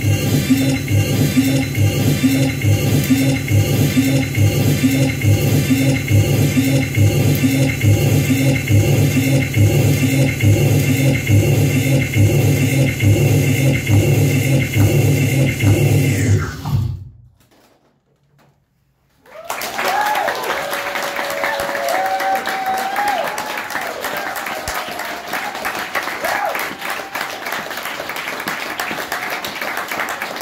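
Electronic noise music: a dense loop of rhythmic low pulses under steady droning tones, which dips in pitch and cuts off about seventeen seconds in. After about two seconds of silence, the audience applauds and cheers.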